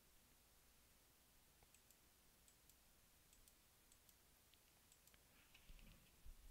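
Near silence with faint, scattered computer mouse clicks, a few more close together near the end.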